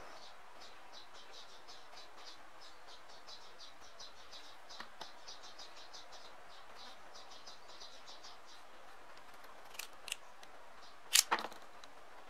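Rapid, regular high-pitched chirping, several chirps a second, typical of an insect, which falls silent about two-thirds through. Near the end come two faint clicks and then a sharp knock, the loudest sound.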